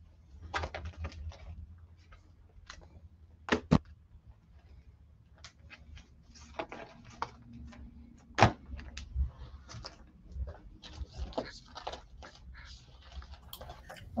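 Baseball cards being handled and dropped onto a pile of cards and plastic sleeves: scattered rustling and light clicks, with sharper taps about three and a half seconds in and again about eight and a half seconds in.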